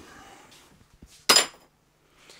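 A single sharp metallic clink about a second in, ringing briefly: a small metal object knocking against a hard surface on the workbench.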